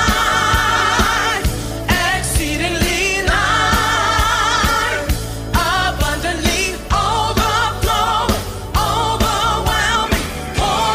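Worship song playing: sung vocals with vibrato over a band, with a steady drum beat.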